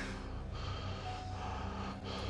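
Heavy, laboured breathing with gasps, over a low steady hum.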